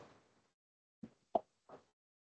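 Three brief, faint knocks about a third of a second apart, the middle one loudest: handling noise at the lectern as papers are picked up.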